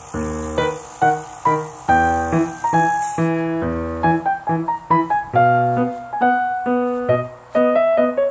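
Piano music: a melody of separately struck notes and chords, each ringing and fading away, at about one to three notes a second.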